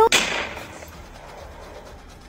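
A single sudden bang, a sound effect, that fades away over about half a second, followed by a faint steady hiss.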